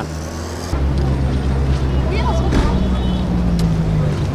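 A motor vehicle's engine running close by, a low steady hum that sets in under a second in and shifts pitch a little, with road traffic noise and faint voices.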